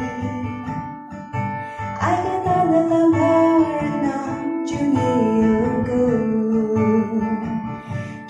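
Acoustic guitar strummed as accompaniment to a woman singing an Ao Naga gospel song; her sung line comes in about two seconds in, with a brief break about halfway through.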